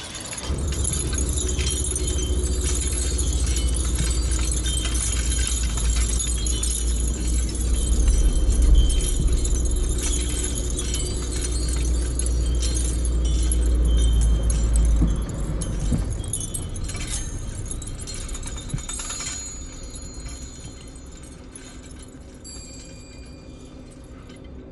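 Car driving through city traffic, heard from inside the cabin: a steady low engine and road rumble that sets in about half a second in and dies down about two-thirds of the way through, with a thin metallic jingling over it.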